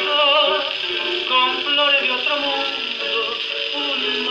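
A criollo waltz played from an old record on a portable wind-up gramophone, with a thin sound that has no bass.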